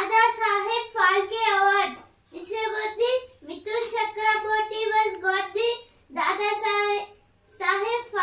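A boy's high voice reading a Telugu newspaper aloud in a chanting, sing-song delivery, in phrases of a second or two with short pauses between them.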